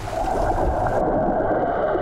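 Water rushing and churning around a swimmer's strokes, heard underwater: a steady, muffled wash that turns duller about a second in.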